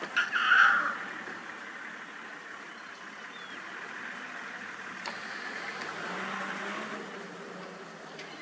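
Safari vehicle engine running steadily, with a short high-pitched call about half a second in.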